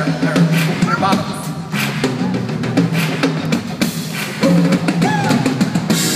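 Live rock drum kit playing a beat, kick and snare, over the band's backing in a concert hall, turned up in the mix.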